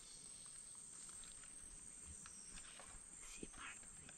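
Near silence: faint tropical forest ambience with a steady high-pitched hum and a few soft rustles or ticks in the leaf litter.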